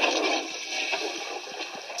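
A toilet flushing: a rushing, gurgling wash of water that is loudest at the start and eases off. It is a film sound effect heard through a TV speaker and picked up by a phone.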